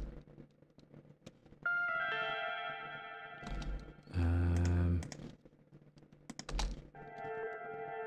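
Short melodic parts of a drum and bass track played back from the music software one after another: a held pitched phrase, a brief louder low note about four seconds in, then another held phrase near the end. Computer mouse and keyboard clicks fall between them.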